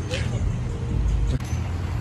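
Car engine idling nearby, a low steady rumble.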